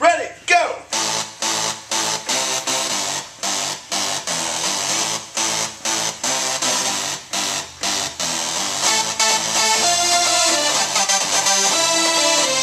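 Electronic synth music with a steady beat and pulsing low notes, played on a keyboard synthesizer, after a spoken count-in. About nine seconds in the part grows denser, with higher synth notes coming in.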